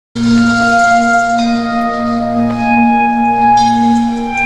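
Slow ambient music of sustained, ringing bell-like tones held over a steady low drone, the higher notes shifting every second or so; it starts abruptly at the very beginning.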